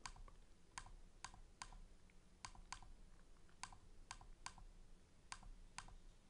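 Faint, irregular clicks from computer input, about a dozen over a few seconds, against near silence.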